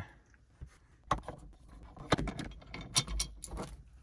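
Scattered metallic clicks and short rattles of a T25 Torx driver working the second screw out of the plastic overhead switch housing, starting about a second in.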